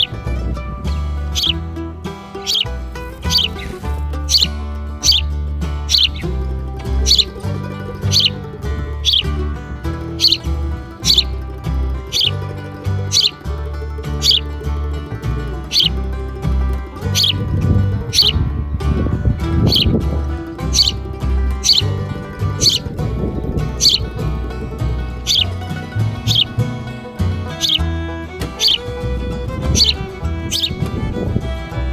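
A sparrow fledgling's begging chirps, short and high-pitched, repeated about once a second, over background music.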